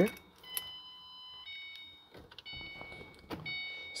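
Keys jangling with a couple of clicks as the ignition of a 2009 Ford Mustang GT is switched on. The dashboard's electronic warning chime sounds four times in a row, each a steady high tone lasting about a second.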